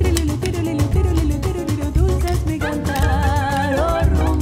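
A small Cuban band playing an instrumental passage of a rumba-flavoured song: a steady double bass and percussion groove under a melodic lead line that ends in a long held note with vibrato.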